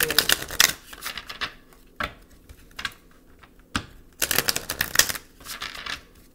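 A tarot deck being shuffled by hand: two runs of rapid clattering, one right at the start and one about four seconds in, with single taps of cards in between.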